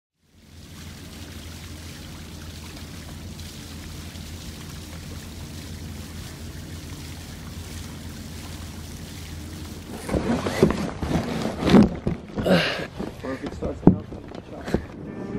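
Steady background wash with a low hum for about ten seconds. Then a run of irregular knocks and rustles as a cardboard box is handled.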